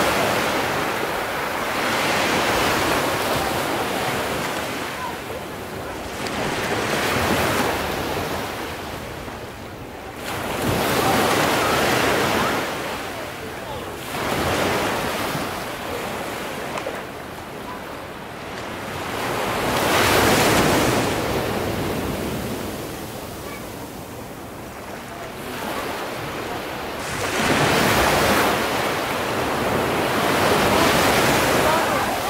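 Sea surf breaking and washing back, in slow swells that rise and fade every three to seven seconds.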